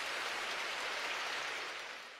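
Audience applause from a live concert recording, a steady dense clatter of many hands, easing off slightly near the end.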